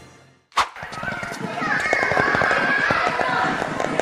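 Cartoon sound effects for an animated logo: a short sharp hit about half a second in, then rapid pattering footsteps of running characters under squeaky, chattering cartoon voices.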